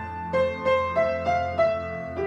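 Petrof upright piano played with both hands: the primo part of a piano duet, a stepping melody of struck notes about three a second over held low notes.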